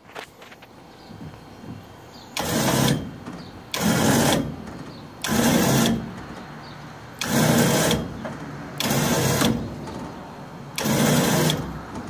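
Gin pole truck's lift run in six short bursts, about one and a half seconds apart, raising the car body clear of its engine and front wheels.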